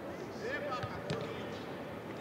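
Football being kicked during a passing drill: two sharp thuds about a second in, a quarter-second apart, among players' shouted calls.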